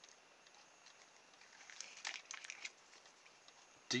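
Faint handling sounds of a small plastic toy helicopter being turned over in the hands, with a short run of light plastic clicks a little before the middle.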